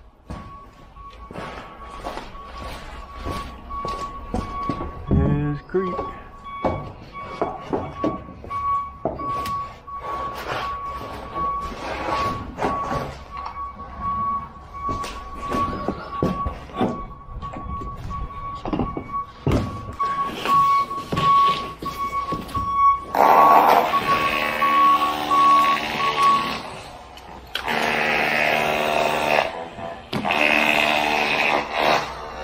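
Laser level receiver on a grade rod beeping at one steady pitch, partly pulsing, while a grade pin is hammered in with irregular knocks. The beeping stops near the end, as a louder sound with a low hum comes in.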